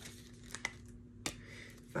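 Tarot cards being handled and shuffled in the hands: a faint papery rustle with a few soft card clicks.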